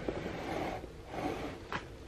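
Soft handling noise and rustling as a camera is moved and repositioned by hand, close to its microphone.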